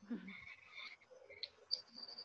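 Faint, short high chirps and squeaks scattered over a low background hiss, heard through a video-call connection, with a brief low murmur at the very start.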